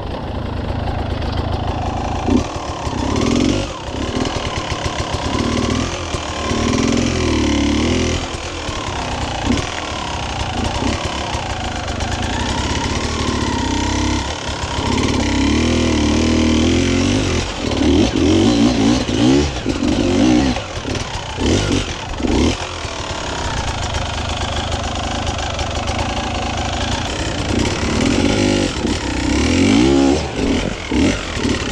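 Enduro motorcycle engine heard from on the bike, revving up and dropping back again and again as the throttle is worked on a rough climb.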